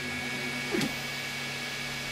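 Steady hum with a faint high whine from a powered-up MakerBot Replicator 2 3D printer, its motors and fans running at rest. A brief short sound a little under a second in.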